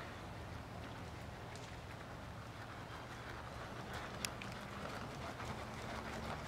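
Faint, muffled hoofbeats of a pony trotting on a sand arena floor, over a low steady rumble, with one sharper tick about four seconds in.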